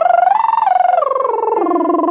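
A singer's lip trill, a fluttering buzz of the lips carrying the pitch, climbing a stepwise arpeggio to a top note about half a second in and then stepping back down. It is a vocal warm-up for the upper range, sung over a steady low note held on an electronic keyboard.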